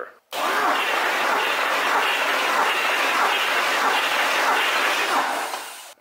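Starter motor cranking a C6 Corvette Z06's LS7 7.0-litre V8 during a compression test. The ignition coils and fuel injectors are disconnected and the fuel pump fuse is pulled, so the engine turns over without firing. The cranking starts abruptly and runs steadily for about five and a half seconds, then stops.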